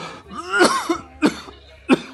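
A man coughing and clearing his throat: a drawn-out rough cough about half a second in, then two short sharp coughs, the last one near the end.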